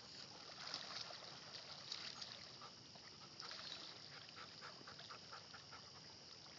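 Two dogs swimming, heard faintly: soft, scattered splashes of water from their paddling.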